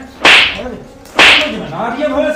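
Two loud, sharp slaps land about a second apart, each a crisp crack that dies away quickly. A man's voice is heard briefly after the second one.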